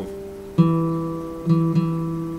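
Nylon-string classical guitar playing a hymn melody one single note at a time: a note rings and fades, a new note is plucked about half a second in and another near the end, each left to ring.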